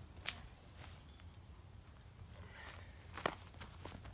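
A few short, sharp knocks, the clearest about a third of a second in and another about three seconds in, over a faint, steady low rumble.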